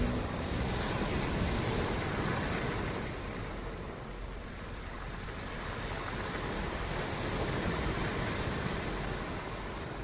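A rushing, surf-like noise with no tune or beat, rising and falling slowly in loudness, part of the sound of a music track; a held musical note stops just as it begins.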